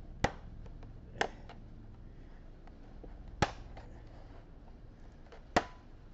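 Back-cover clips of an Acer Aspire C22-860 all-in-one PC snapping loose as a spudger pries along the bottom edge: four sharp clicks at uneven gaps, with faint ticks in between.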